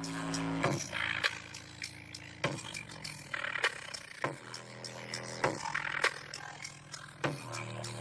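Bass-boosted music playing through a pair of Indiana Line TH 210 speakers fitted in a car, run from a 120-watt car radio: long held low bass notes under a beat of sharp hits.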